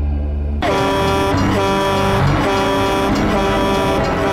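A low, eerie music drone cuts off abruptly about half a second in. A film soundtrack follows: a vehicle horn blaring in long, repeated blasts over music and traffic noise.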